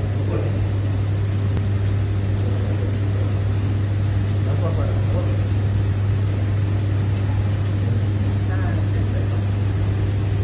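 Powder coating booth's extraction fan running steadily, with a strong low hum under an even rushing noise.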